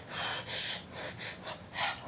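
A person eating a mouthful of hot-pot meat with noisy sharp in-breaths and slurps, in four or five short airy bursts.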